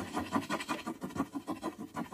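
Graphite pencil scratching across paper as it writes, in quick rasping strokes about seven a second.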